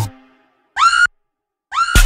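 The beat of an electronic dance track cuts out and falls silent. In the gap come two short whistle sounds, each sliding up in pitch and then holding, about a second apart. The full beat returns at the very end.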